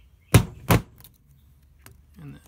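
Two sharp taps of a small hammer on a small flat-blade screwdriver whose tip rests on copper jumper wire just below a 66-block pin, scoring the excess wire so the tail can be wiggled off. The taps come a little under half a second apart, the first the louder.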